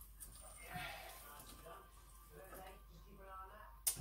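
Faint, indistinct voice murmuring twice, low under a steady room hum.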